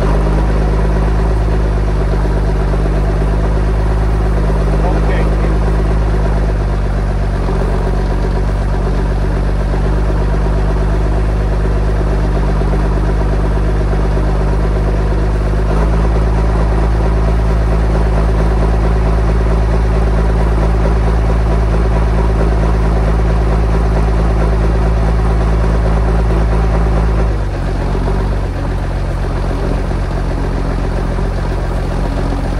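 Diesel engine of a 1997 John Deere 648G log skidder running steadily while the machine is driven, heard from inside the cab. The engine gets louder about halfway through and drops back a few seconds before the end.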